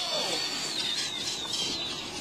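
Electric RC monster truck's motor and gears whining as it drives past: one thin high tone that wavers and steps down in pitch, fading out near the end.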